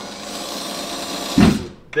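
Cordless drill running steadily for about a second and a half, driving a fastener for a pulley mount into an overhead beam. A loud, dull thump comes near the end as the drill stops.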